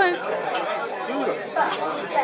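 Background chatter of several people talking at once, with a word spoken close by at the very start.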